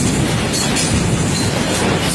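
Freight train of flatcars loaded with lorries running past close by: a steady, loud noise of wheels on rail.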